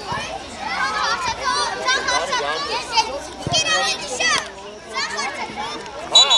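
Young children's voices shouting and calling over one another on a football pitch, rising to high excited cries a little past halfway, with a single thump about three and a half seconds in.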